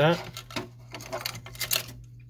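Several light plastic clicks and taps in quick succession as hands handle the print head carriage and its flat ribbon cable inside an Epson WorkForce WF-2650 printer, over a steady low hum.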